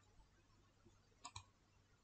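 A computer mouse button clicking faintly, two quick clicks close together a little over a second in, over near silence.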